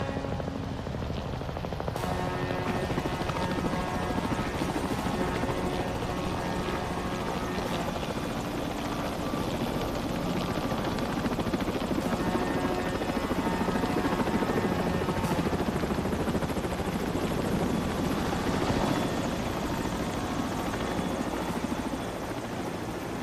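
Helicopter running close by, its rotor beating steadily, with a music score underneath.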